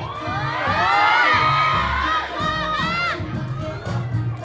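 Audience cheering and screaming in many overlapping high voices, each scream rising and falling in pitch. It swells just after the start, is loudest around a second in, and dies away after about three seconds, with the dance track's beat running underneath.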